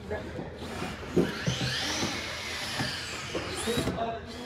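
Cordless drill driving a screw into a cedar board, its motor whine climbing and then falling in pitch, with a short second run near the end.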